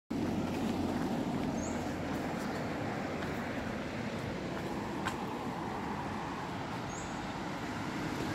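Steady roadside traffic noise from vehicles on a multi-lane road, with a low engine hum in the first couple of seconds.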